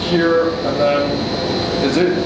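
A man talking, with a thin, steady high-pitched tone and a faint hum of machinery in the background.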